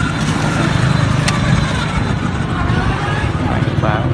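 Outdoor street background: a steady low rumble with faint voices in the distance, and a single sharp click about a second in.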